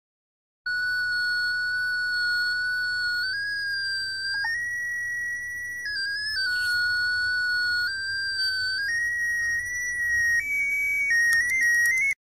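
Small speaker on a clybot C6 Arduino robot sounding a continuous electronic tone whose pitch follows the light falling on its photoresistor eyes. The tone starts about a second in, holds level for stretches and steps up and down in pitch several times, changing more quickly near the end as hands shade the sensors.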